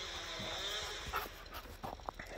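A dog whining, a wavering high-pitched tone that fades out about halfway through, followed by a few light clicks and taps.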